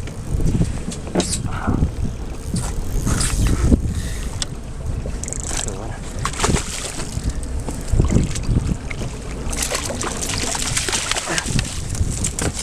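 Wind buffeting the microphone over choppy water slapping against the hull of a small boat, with scattered knocks. For the last two seconds or so a denser hiss of splashing as the hooked bluefish thrashes at the surface beside the boat.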